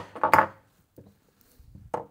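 A sharp click, then a short clatter, as a cylindrical battery cell is handled at a plastic four-bay charger; after that near silence with one faint tap about a second in.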